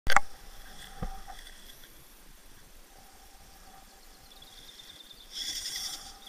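Small electric motor and gearbox of a radio-controlled rock crawler whining as it creeps over rock, growing louder shortly before the end. A sharp click comes at the very start, and a lighter knock about a second in.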